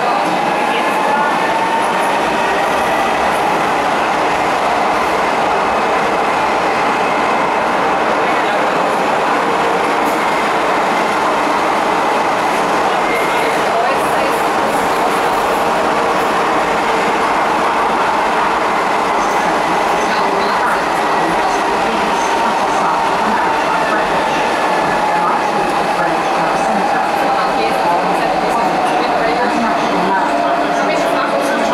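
Docklands Light Railway B2007 Stock train running through a tunnel, heard from inside the car: a steady rumble of wheels on rails under a whine. The whine climbs in pitch over the first few seconds as the train gathers speed, holds, then drops away over the last several seconds as it slows.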